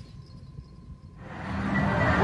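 A faint low rumble with a thin steady tone. About a second in, the noise of a casino floor fades up, with steady electronic tones from the slot machines.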